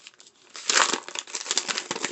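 Gift-wrapping paper crinkling and rustling as a present is unwrapped by hand, starting about half a second in after a brief near-quiet.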